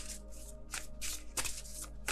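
A deck of oracle cards being shuffled by hand: a series of short, soft papery swishes, several over two seconds at uneven spacing.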